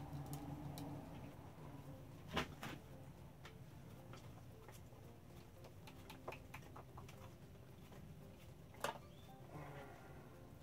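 Faint clicks and knocks from a metal can of fiberglass resin being handled and tipped over a plastic mixing tub, over a low steady hum. Two sharper clicks stand out, one about two seconds in and one near the end.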